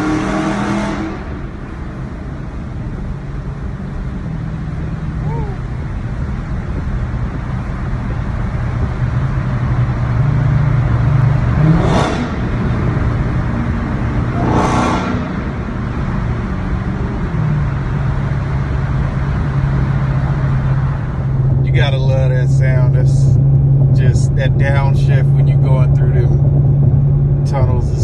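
Dodge Hellcat's supercharged V8 heard from inside the cabin, a steady low drone at highway cruising speed that grows slowly louder, with two brief whooshes about twelve and fifteen seconds in.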